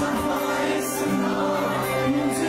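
Live concert performance of an Urdu pop ballad: many voices singing the melody together, as an audience singing along, over amplified acoustic-guitar accompaniment in a large hall.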